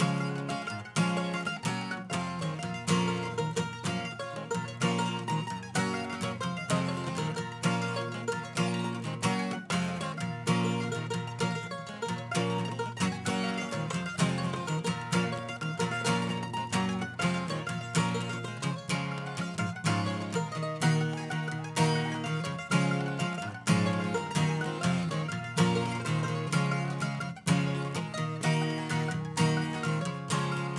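Mandolin and acoustic guitar playing an instrumental tune together, a brisk, steady stream of picked notes over the guitar's lower chords.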